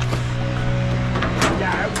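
Bucket truck's engine idling with a steady low drone, with faint voices in the second half.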